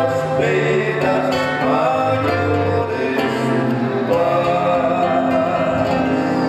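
Gospel song played live: male voices sing slow held notes over acoustic guitar.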